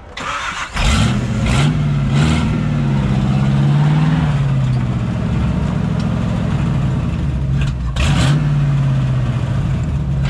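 Jeep TJ Wrangler engine starting about a second in, catching at once and running loudly with the throttle worked up and down. The engine note rises, holds, drops back, and is blipped up again near the end.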